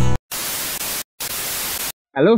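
Two bursts of white-noise static, each just under a second long, separated by a brief silence and starting and stopping abruptly: a TV-static editing transition effect.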